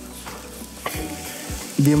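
Fabric rustling as a length of light cloth is lifted and shifted by hand.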